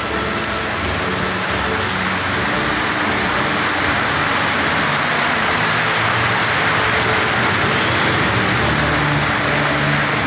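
Audience applauding steadily, swelling slightly in the middle.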